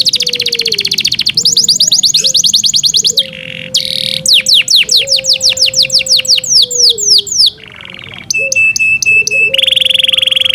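Yorkshire canary singing: a fast rolling trill, then a run of quick down-slurred whistles, a short break, a series of clipped ticking notes, and a buzzing trill near the end.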